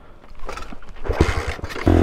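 The 1967 Honda CT90's small single-cylinder four-stroke engine gives a few low thumps, then catches and runs steadily just before the end.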